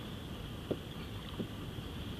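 Quiet ambience on open water: a low, steady hiss of light wind and water, with two faint clicks.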